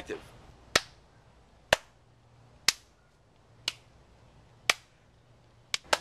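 Slow, sharp hand claps: five single claps about a second apart, then two in quick succession near the end.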